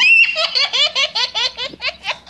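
High-pitched laughter, a quick run of short 'ha' bursts, about seven a second, starting abruptly.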